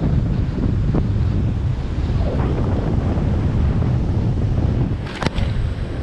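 Wind buffeting the microphone over the wash of surf breaking on rocks below a sea cliff, a steady low rumble, with one sharp knock near the end.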